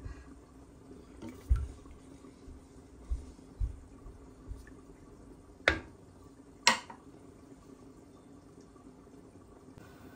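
A low steady background hum with a few dull low bumps, then two sharp knocks about a second apart just past the middle.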